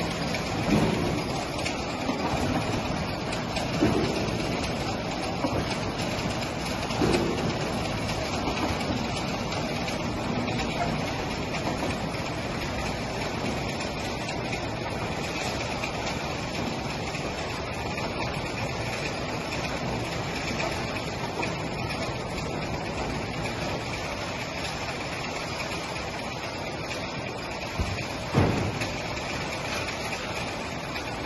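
Automatic inline oil-filling line running, with steady mechanical noise from the conveyor and machine, broken by a few short clunks: three in the first seven seconds and one near the end.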